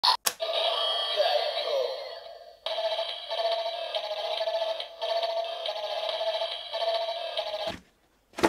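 DX Kumonoslayer toy transformation device playing its electronic henshin sound through its built-in speaker: a voice over a rhythmic music loop. A first phrase fades out, then a second, steady loop starts about two and a half seconds in and cuts off just before the end.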